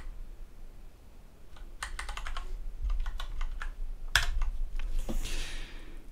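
Typing on a computer keyboard: irregular key clicks in short runs, a cluster about two seconds in and another, with the loudest click, around four seconds in.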